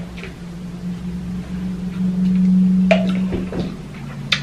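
Drinking from a plastic water bottle over a steady low hum that swells about two seconds in. A sharp click comes near the end.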